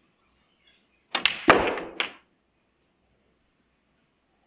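Snooker balls knocking: a cue strike and ball-on-ball contacts, a quick run of about five sharp clicks over one second, the loudest in the middle, as the black is potted.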